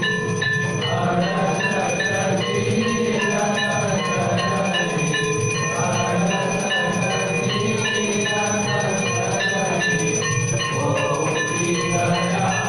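Temple bells and gongs of an aarti ringing together without pause: a dense, clanging metallic din of many overlapping pitches, struck again and again over a steady low rumble.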